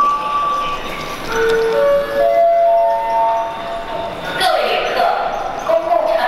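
Electronic public-address chime in a large station hall: a short run of notes stepping upward in pitch, each ringing on over the next. A voice follows about four and a half seconds in.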